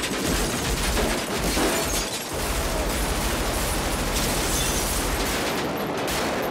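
Sustained automatic rifle fire in a film's street gunfight: a dense, continuous rattle of rapid shots, with a brief lull about two seconds in.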